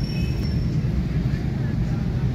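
Steady low rumble of outdoor background noise, with a faint thin high whine that fades out within the first second.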